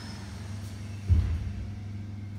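A steady low hum, with a single dull thump about a second in.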